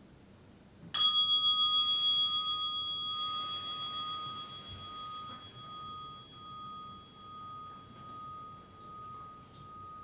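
A meditation bell struck once about a second in, ringing with a clear high tone and a long decay that wavers in loudness as it fades. It marks the end of a 20-minute meditation sitting.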